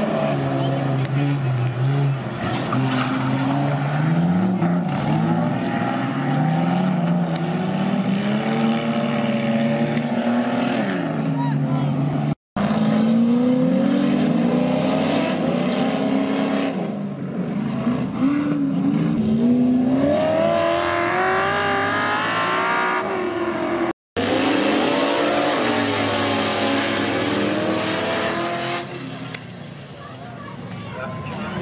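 Several dirt-track race car engines revving up and down as the cars race around the track, in three stretches broken by two sudden cuts.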